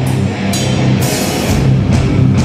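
Metallic hardcore band playing live, loud: heavy distorted guitars over a drum kit, with the drums hitting harder from about a second and a half in.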